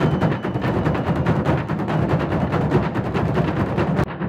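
Afro-Venezuelan San Juan festival drums played fast and without pause, a dense run of strokes over the noise of the crowd.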